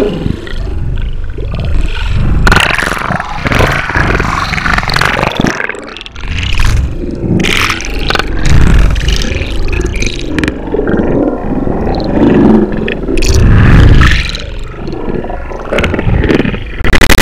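Loud, irregular underwater churning and bubbling, muffled by the camera's waterproof housing, from hard fin kicks and reef sharks thrashing close by.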